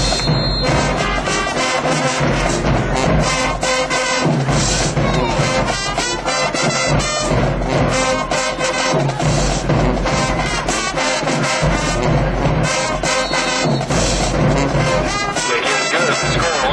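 High school marching band playing loudly in the stands: massed brass horns, including trumpets and sousaphones, over a steady drum beat.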